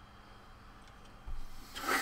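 Quiet room, then in the second half a brief rubbing scrape, loudest near the end, as a small RC truck part is slid on the wooden desktop.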